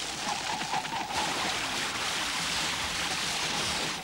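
Cartoon sound effect of a super-fast running dash: a steady rushing whoosh that grows brighter toward the end, with a faint wavering tone in the first second.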